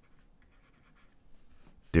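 Faint scratching and light tapping of a stylus writing on a tablet surface as a word is handwritten.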